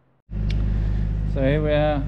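A steady low mechanical hum starts suddenly about a quarter second in, with a man's drawn-out 'uh' near the end.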